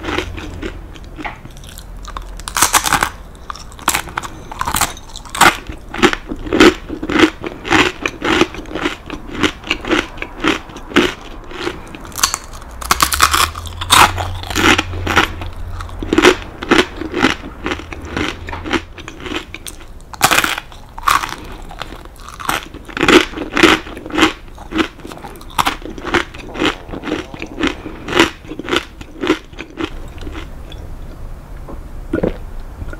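Close-miked crunching and chewing of crisp baked cheese crackers made with kaki no tane rice-cracker pieces: sharp crackling bites, several louder ones a few seconds in, around the middle and about two-thirds through, between steady chewing crunches.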